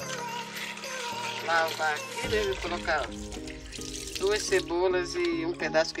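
Background music with a sung vocal line, over water running from a tap into a plastic tub.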